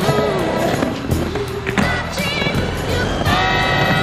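Music with a held, wavering melody line, mixed with the rolling rumble of skateboard wheels on concrete and a few sharp clicks.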